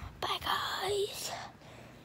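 A girl's breathy, mostly unvoiced speech very close to the microphone, with no clear words, lasting about a second from shortly after the start.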